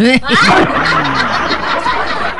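Group laughter, a comedy laugh track, breaks out suddenly and keeps going.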